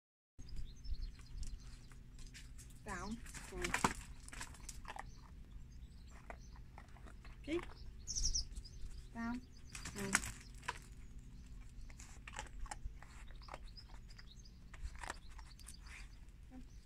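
A few brief, quiet vocal sounds and scattered soft clicks and taps, with a bird chirping about eight seconds in.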